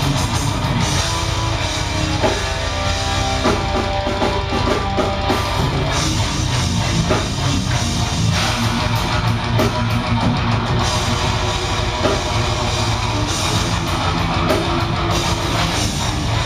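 Death metal band playing live at full volume: fast drum kit and distorted electric guitars in a dense, steady wall of sound.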